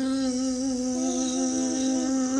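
A person's voice humming one steady, buzzing note, imitating the whir of a hair dryer for a child's toy dryer.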